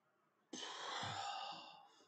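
A man's long sigh, a breathy exhale that starts suddenly about half a second in and fades away over about a second and a half.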